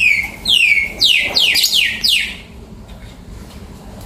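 Caged Fischer's lovebirds calling: a quick run of shrill screeches, each falling in pitch, over the first two seconds, then the calls stop.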